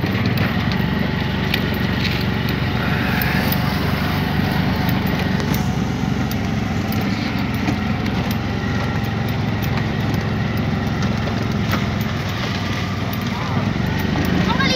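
Auto-rickshaw underway: its engine runs at a steady drone, with frequent small rattles and clicks from the vehicle.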